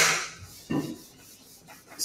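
An eraser rubbing across a board in two wiping strokes. The first starts sharply and fades over about half a second; the second, shorter one comes just under a second in.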